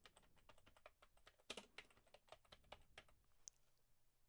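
Faint typing on a computer keyboard: a quick, irregular run of soft key clicks, a few of them a little louder about one and a half seconds in.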